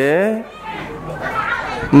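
A monk's voice preaching in Khmer into a handheld microphone, ending a long drawn-out sing-song syllable; in the short pause that follows, faint background voices are heard before he starts speaking again at the end.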